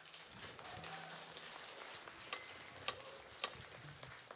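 Applause from a small audience: a steady patter of hand claps. A brief thin high tone sounds about two and a half seconds in.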